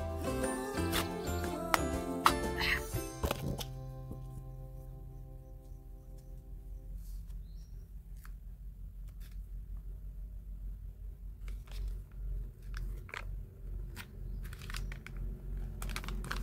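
Scattered crinkles and crackles as a spiral-wound cardboard Pringles can is peeled off a soap log and the freezer paper beneath is handled. Background music plays until about halfway through, after which a low engine rumble from passing side-by-sides is heard.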